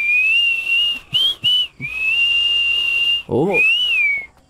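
A man whistling a tune with his lips in several short phrases and one long held note, the pitch wavering slightly with breath. A brief voiced sound cuts in near the end before the whistling picks up again.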